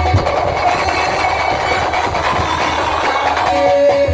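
Live folk-theatre accompaniment music: a hand drum and other instruments playing a busy rhythmic passage. A steady held note comes in near the end.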